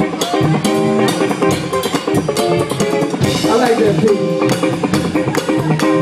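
Live funk band playing, with a drum kit keeping a steady beat under held and moving pitched instrument lines.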